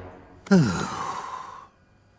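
A person's long sigh, starting about half a second in. A short voiced note falls steeply in pitch, then trails off into breath over about a second.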